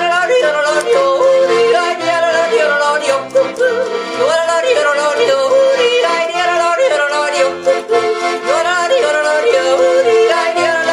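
A woman yodeling a traditional German song, her voice leaping up and down in quick breaks, while she accompanies herself on a Pilzweger piano accordion with held chords and regularly pulsing bass notes.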